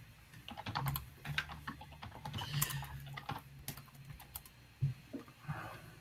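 Typing on a computer keyboard: irregular, quick key clicks.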